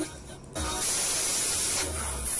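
A loud, steady hiss with a low rumble beneath it, heard inside a moving truck's cab. It starts suddenly about half a second in.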